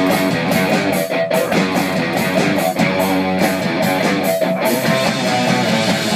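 Gibson Les Paul electric guitar played with a pick in a steady, even rhythm of repeated notes and chords.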